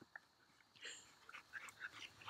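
Near silence, broken by a few faint, brief sounds from a dog close by, the largest about a second in.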